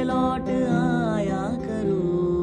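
A young man's voice singing a Hindi song to his own strummed acoustic guitar, holding a long wavering note that slides down about one and a half seconds in.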